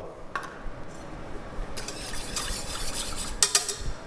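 Wire whisk beating egg, sugar and corn flour in a stainless steel bowl: a fast, scratchy scraping of wire on metal that starts about two seconds in, with a couple of sharp clinks near the end.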